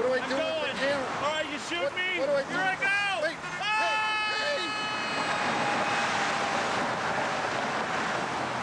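A man's voice crying out in short high-pitched yells, then, about four seconds in, one long scream that slowly falls in pitch and fades away.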